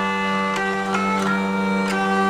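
Hurdy-gurdy playing an instrumental passage: a steady drone under a melody that steps from note to note, with a sharp click at many of the note changes.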